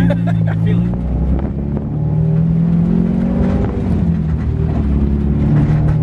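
K20/K24 four-cylinder in an Acura Integra, heard from inside the cabin, pulling under acceleration: its pitch climbs, drops back about four seconds in as it shifts up, then climbs again.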